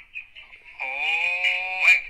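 A person's voice holding one drawn-out vowel for about a second, starting about a second in, over a steady high-pitched tone with thin, telephone-like sound.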